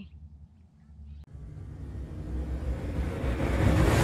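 A whoosh sound effect that starts with a click a little over a second in and swells steadily louder and brighter over about three seconds, rising into the channel logo intro.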